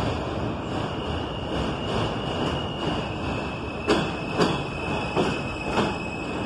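R160 subway train running away around a curve on elevated track. A thin, high, steady wheel squeal starts about a second in, and four sharp clacks of wheels over rail joints come in the second half.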